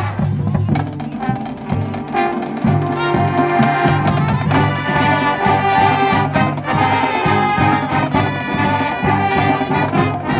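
Marching band playing its field show: the brass section in full sustained chords over percussion, swelling louder about two to three seconds in.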